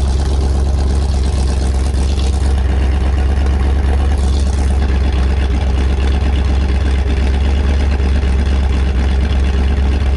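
Ford 408 Windsor stroker V8 in a 1982 Ford Bronco idling steadily with open exhaust through shorty headers. It is a very mild build on a hydraulic roller cam.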